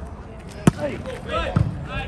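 A volleyball being served: one sharp, loud smack of a hand on the ball about a third of the way in, then a couple of duller thumps near the end, with short calls from players.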